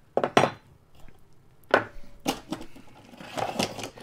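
Metal tools and clamps being handled on a wooden workbench: a handful of separate clattering knocks.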